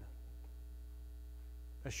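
Steady low electrical mains hum, with a few faint steady higher tones, in a pause in a man's speech; his voice comes back near the end.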